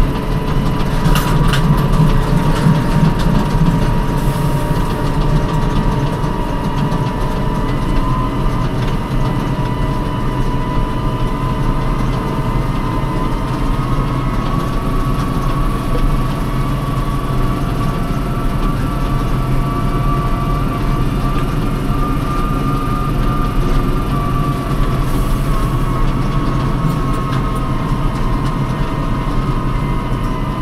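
Fendt Vario tractor heard from inside the cab while driving: a steady engine drone with a high whine from the drive that drifts slightly in pitch.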